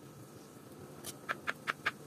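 Kitchen knife slicing a peeled banana into rounds, the blade tapping a plastic cutting board in a quick, even run of sharp clicks, about five a second, starting about a second in.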